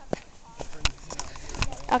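Footsteps on a bare rock surface: three sharp, gritty steps about three quarters of a second apart.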